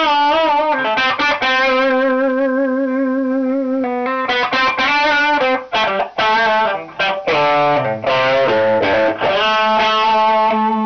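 Electric guitar played through a 1974 Marshall Super Bass valve head modded to Super Lead specs, channels bridged, into a Marshall 1960 4x12 cabinet, with an overdriven tone. It plays a lead line: wavering vibrato notes, one note held for about two and a half seconds, then quicker notes with upward bends.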